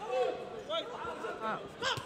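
Male sports commentary speech with a short exclamation, "Oh", about one and a half seconds in; a brief sharp sound near the end.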